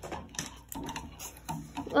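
Irregular light clicks and knocks of hard plastic: a plastic fashion doll and its arms bumping against a clear plastic tube as the doll is pushed down into it.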